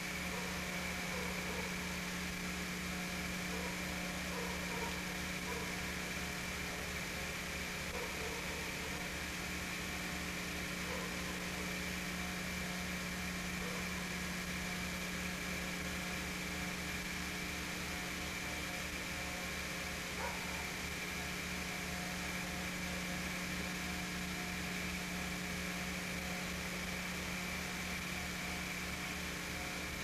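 Steady, unchanging mechanical hum over a constant hiss, with a low pulsing drone and a faint high whine held throughout.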